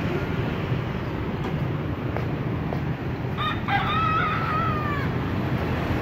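A rooster crowing once, about three and a half seconds in: a couple of short notes, then a long held note that sinks slightly as it ends. Steady street traffic noise runs underneath.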